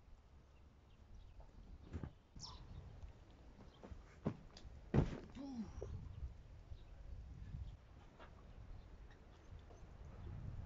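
A few dull thumps over a low wind rumble on the microphone, the loudest about five seconds in: a body landing on a thin mattress laid on grass after a front flip.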